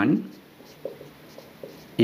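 Marker pen writing on a whiteboard: a few short, faint strokes as letters are drawn.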